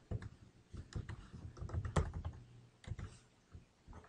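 Typing on a computer keyboard: irregular runs of keystrokes, with one louder strike about two seconds in.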